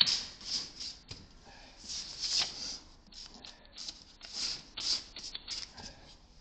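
A folded paper leaflet rustling and scraping in irregular bursts as it is pushed into the gap of a metal mailbox door, with a sharp click at the start.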